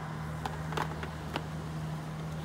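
A steady low motor hum, with a few light clicks and taps as the frying pan and its box are handled.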